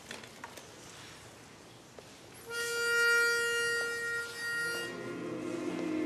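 A pitch pipe sounds one steady reedy note for about two seconds, starting midway through. Just before the end the barbershop chorus of men's voices comes in on held notes, taking the starting pitch.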